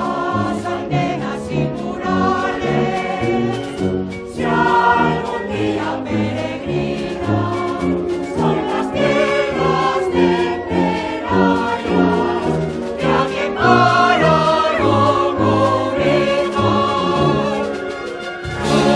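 Mixed choir singing a hymn with a wind band accompanying, brass and woodwinds under the voices.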